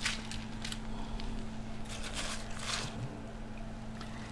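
Handfuls of shredded fresh cabbage dropped and pressed into a baking pan over a layer of cornflakes, giving a few soft rustles, over a steady low hum.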